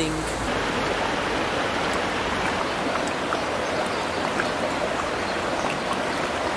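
Steady rush of flowing hot-spring water, with a few faint small pops.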